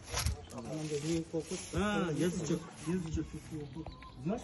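A man talking, his words not made out, with a short rush of noise right at the start.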